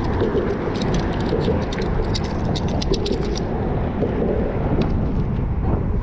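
Wind buffeting the microphone as a continuous low rumble, with a run of rapid light clicks from about one to three and a half seconds in.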